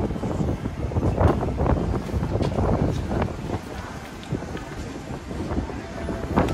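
Wind rumbling on the microphone over steady city street noise.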